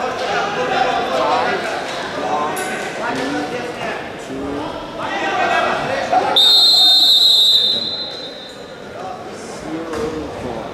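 Referee's whistle blown once, one high shrill blast lasting a little over a second, signalling the fall that ends the freestyle wrestling bout. Before it, voices shout from the mat side.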